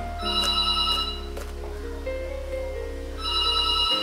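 Telephone ringing twice, each ring about a second long, over background music.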